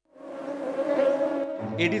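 Mosquito buzzing: a steady, high whine that swells up after a moment of silence and holds for about a second and a half. A voice starts reading near the end.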